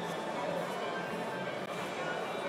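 Background music with a murmur of distant voices, steady and fairly quiet.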